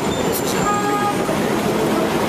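Steady city street traffic noise, with a short vehicle horn toot about half a second in.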